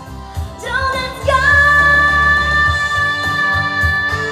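A young girl singing a pop song into a microphone over a backing track with a beat. About a second in, her voice slides up into one long held note.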